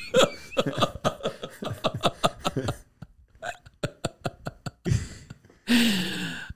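A man laughing hard in quick, breathy, hiccup-like spasms, about five or six a second, trailing off halfway, then drawing a loud breath near the end.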